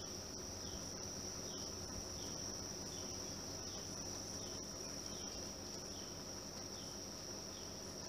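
A steady, high-pitched buzz of summer insects, faint, with short chirps repeating about once a second.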